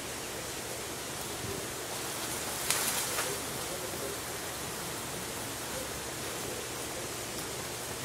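Steady outdoor background hiss, with a brief sharp crackle about three seconds in.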